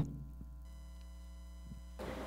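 Faint steady electrical hum with thin, steady high tones, and no speech.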